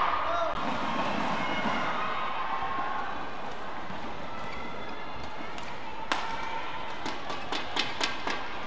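Indoor arena crowd and voices murmuring between badminton rallies. About six seconds in a racket hits a shuttlecock sharply, and a quick run of further shuttle hits follows near the end as a new rally gets going.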